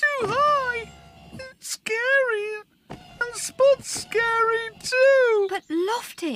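A cartoon character's wordless, reluctant moaning and whimpering: a run of drawn-out vocal sounds, each under a second, that slide up and down in pitch.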